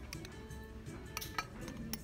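Several sharp glass clinks as a glass tea-leaf infuser is handled in the neck of a glass teapot, over background music.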